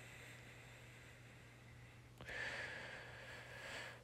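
Mostly near silence, then a faint breath drawn in starting about two seconds in, just before speaking.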